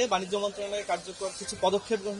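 Speech only: a man speaking in Bengali.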